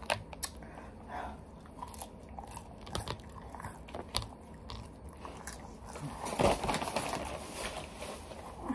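A person chewing and biting crunchy fried takeout food, with scattered crunches throughout and a louder stretch of chewing a little past six seconds in.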